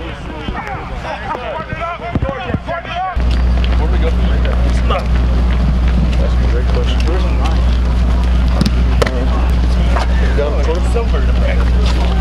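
Scattered voices on an outdoor practice field, then about three seconds in a loud, steady low engine-like hum cuts in abruptly and holds, with occasional clicks and faint voices over it.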